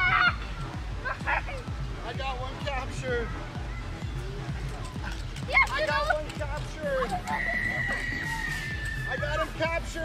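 Young children shrieking and squealing in high, wordless cries over background music.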